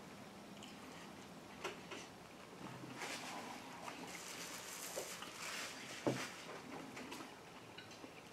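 Faint chewing and mouth noises from a man eating a crispy chicken sandwich, with a few small clicks. A paper napkin rustles against his mouth from about three seconds in.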